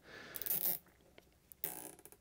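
A plastic zip tie being threaded and pulled by hand, with handling rustle. It comes in two short rasping bursts, the second near the end carrying a quick run of small ratchet clicks as the tie is drawn tight.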